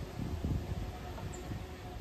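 Wind rumbling unevenly on the microphone outdoors, with a faint background hiss.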